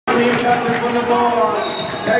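Voices ringing through a sports hall over sharp clacks of roller skates on the wooden floor, with a brief high whistle near the end.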